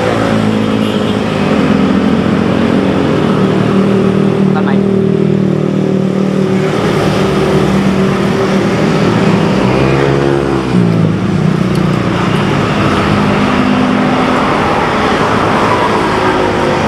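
A road vehicle's engine running close by, holding a steady hum, then dropping sharply in pitch about ten seconds in, over roadside traffic noise.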